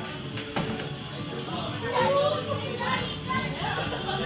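Scattered voices of a group of people talking, with music playing in the background.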